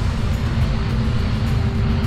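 Wind buffeting an outdoor camera microphone: a loud, unsteady low rumble, with a faint steady hum of held tones underneath.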